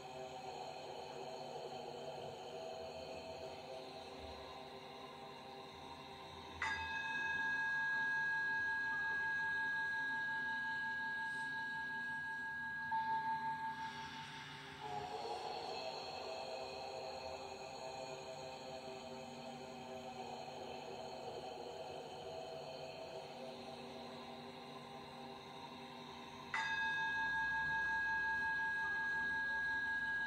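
Slow ambient meditation music of sustained tones. A bright ringing tone enters sharply about seven seconds in and holds for several seconds, then a swell follows, and the same ringing tone enters again near the end.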